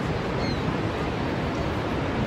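Steady rushing roar of Niagara's Horseshoe Falls: an even, unbroken wash of falling water.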